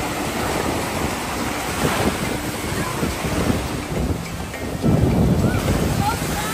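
Ocean surf breaking and washing through shallow water, with wind buffeting the microphone. A louder surge of rushing water comes about five seconds in.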